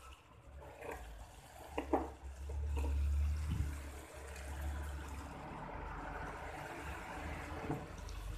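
Chili sambal with octopus and squid bubbling and sizzling in a pan, a steady hiss that swells a few seconds in over a low rumble, with a few short clinks of a metal spoon against the pan.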